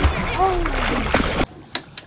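Water splashing and churning as a hooked bull shark thrashes at the surface against the boat's side, over wind rumble on the microphone, with a short falling vocal sound about half a second in. The sound cuts off abruptly about one and a half seconds in.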